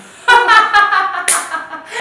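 A woman laughing loudly in high-pitched, breaking bursts, with three quick low thumps near the start of the laugh.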